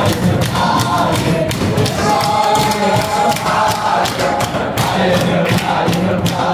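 A large group of young men singing a Hasidic song together in unison, with hands beating time in a steady rhythm of about three beats a second.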